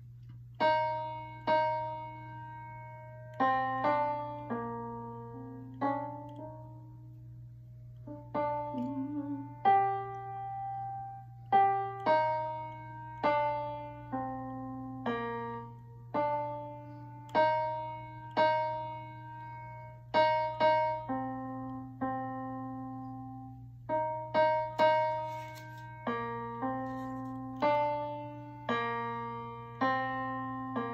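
MIDI digital piano playing a slow choral part, notes and two-note chords struck about once a second and each left to die away, with a steady low hum underneath.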